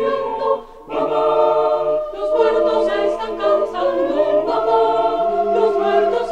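Four-part a cappella choir singing sustained chords, with a short break a little under a second in before the voices come back in together.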